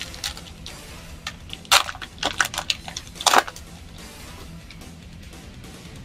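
Foil trading-card booster pack crinkling and tearing open in gloved hands: a run of sharp crackles in the middle, loudest twice, over faint background music.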